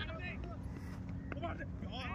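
Faint, distant men's voices in short snatches over a steady low rumble.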